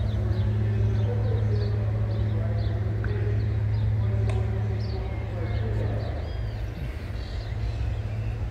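Outdoor town ambience: a steady low hum like an idling engine, faint distant voices, and birds chirping now and then.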